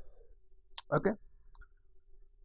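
Two sharp clicks at a computer, a little under a second apart, over a faint steady hum.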